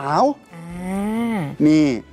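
Speech only: a Thai narrator's voice, with one word drawn out for about a second before it falls in pitch.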